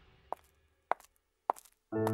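Three sharp footsteps on a hard tiled floor, about 0.6 s apart, at a walking pace. Just before the end, a loud held music chord comes in.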